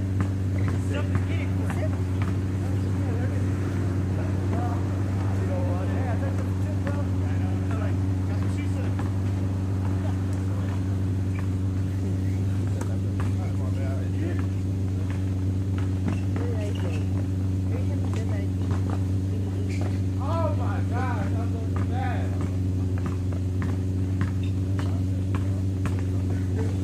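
Distant voices and calls of players in a pickup basketball game, with a few faint knocks, over a steady low hum.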